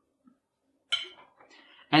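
A single clink of a table knife against a ceramic plate about a second in, as the knife is picked up to cut the meat.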